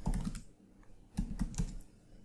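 Computer keyboard keystrokes as a terminal command is typed: a quick run of clicks at the start and a second short cluster a little past halfway.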